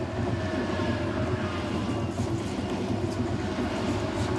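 ICE high-speed electric train passing close by, a steady rumble of wheels on the rails as its cars go past.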